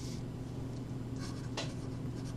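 Felt-tip marker writing on paper in short strokes, one right at the start and a cluster about a second and a half in, over a steady low hum.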